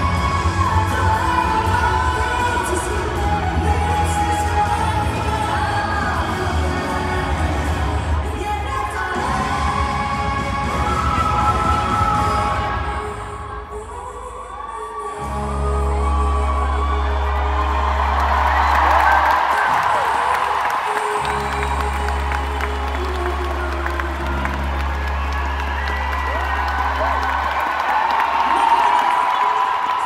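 Live pop ballad sung by two women with a band, held notes over deep sustained bass. The music thins out briefly about halfway, then the bass comes back in, and the audience cheers and whoops in the second half.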